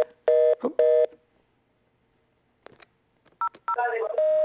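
Telephone line tones over the studio phone line: a two-note busy signal beeping three times quickly in the first second, then a few short touch-tone key beeps near the end.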